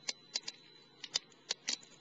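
Twigs burning in a small wood-burning camp stove, crackling with irregular sharp pops, several a second.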